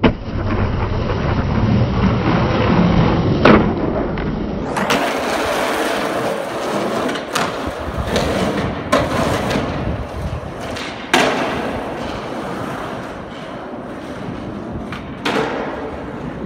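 Skateboard wheels rolling over concrete and asphalt, with several sharp clacks of the board hitting the ground. The sound changes abruptly about five seconds in.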